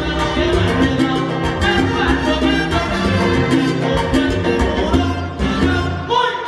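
Live salsa band playing, with trumpets, timbales and keyboard.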